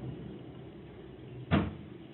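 A BMW E36's M43 four-cylinder engine runs with a steady low hum, and a single sharp knock comes about one and a half seconds in.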